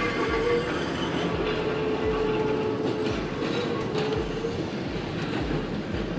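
Vintage heritage tram rolling along street rails, with a steady whine held for a few seconds that fades out about four and a half seconds in.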